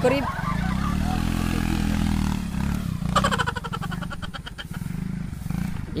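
Yamaha X-Ride automatic scooter's single-cylinder engine, worked by hand through tall grass. It revs up and falls back within the first couple of seconds, then keeps running on throttle, with a louder burst about three seconds in.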